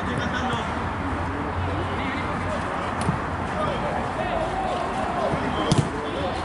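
Players' distant shouts and chatter over a steady low background hum on a football pitch, with a sharp thud near the end as the ball is struck.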